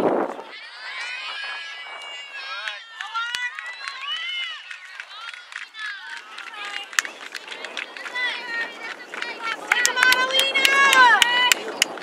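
High-pitched shouts and calls from players and spectators at an outdoor girls' soccer match, short yells overlapping throughout and loudest and busiest near the end, with a few sharp knocks among them.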